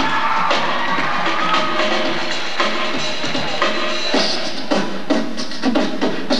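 A rock drum kit played live, with repeated snare and bass drum hits, over sustained musical tones.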